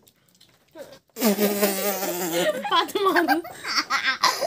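A young girl's loud, drawn-out laughter. It starts about a second in after a brief pause, holds one long note, then wavers and breaks up.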